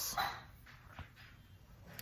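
A few faint, short dog sounds.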